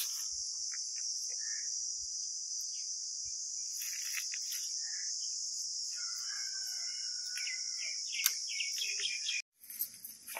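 Steady, high-pitched drone of insects, with short bird chirps and calls over it, more of them from about four seconds in; the drone cuts off suddenly near the end.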